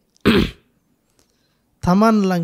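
A man clears his throat once: a short, rough burst into a close microphone.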